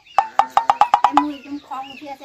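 A quick run of about ten short, hollow knocks, speeding up over about a second.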